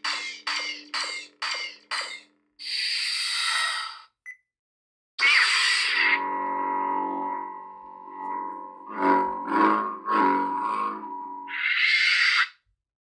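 A Proffie-board lightsaber's sound effects playing through its 28 mm speaker. A pulsing hum gives way to a shut-off burst about two and a half seconds in. After a short pause a loud ignition burst comes at about five seconds, then a steady hum that swells several times as the saber is swung, and a retraction burst near the end.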